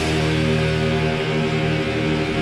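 Live heavy rock band playing: distorted electric guitars hold a sustained chord over the drum kit.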